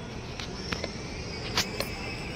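Outdoor ambience: a steady background hiss with a few sharp clicks, the loudest near the end, and a faint high-pitched steady tone that comes in about halfway through.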